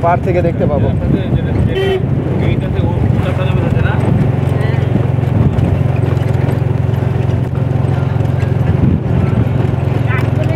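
A road vehicle driving at speed: a steady low engine and road drone, heard from aboard the moving vehicle.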